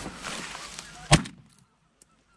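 A rustling hiss, then a single shotgun shot about a second in, the loudest sound, ringing briefly before the sound cuts out.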